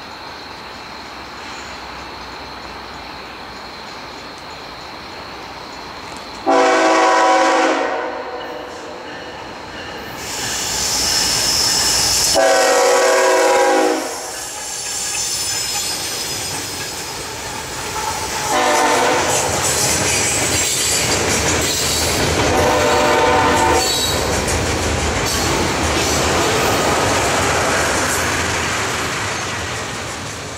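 CSX freight train led by a GE ES44AH locomotive sounding its horn in a series of blasts, the first two long, as it approaches and passes. The diesel locomotives' rumble and the clatter of wheels on rail follow as the engines go by, fading near the end.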